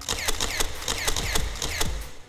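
A camera shutter firing in a rapid burst, a fast even run of clicks, over a low thump about twice a second.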